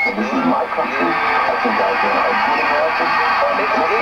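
A jumble of voices talking over one another with the thin, boxy sound of radio or TV broadcast audio. A thin high tone cuts off just at the start.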